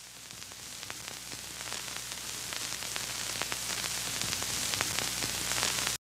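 Static hiss with faint scattered crackles and a low hum, growing steadily louder and then cutting off abruptly at the end.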